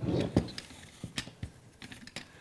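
T-shirt loops being handled and pulled through the pegs of a wooden pot holder loom: a soft rustle with a few light clicks and taps.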